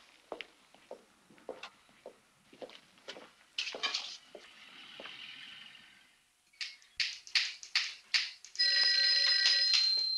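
Footsteps and light clatter on a hard floor, then sharper knocks. About a second and a half before the end, an old electric telephone bell starts ringing steadily, the loudest sound here.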